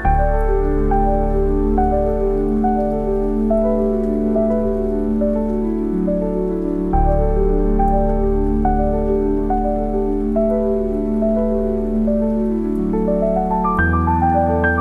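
Slow, gentle solo piano music: a melody of ringing notes over low sustained bass notes that change about every seven seconds, with a steady rain sound laid underneath.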